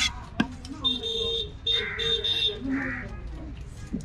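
An electronic beeping tone, one long beep followed by three short ones in quick succession, over background voices. Near the start, two sharp knocks of a knife chopping on a wooden chopping stump.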